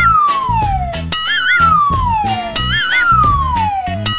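A cartoon sound effect repeats three times: a short warble, then a long falling whistle-like glide, as each rod moves onto the trailer. Bouncy background music with a steady beat plays underneath.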